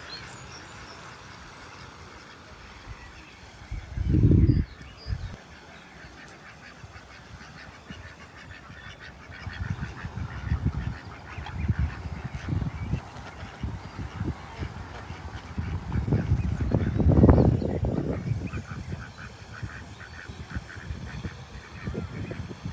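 Domestic ducks quacking at the water's edge, in scattered calls from about ten seconds in. Low rumbles, the loudest sounds, come about four seconds in and again past the middle.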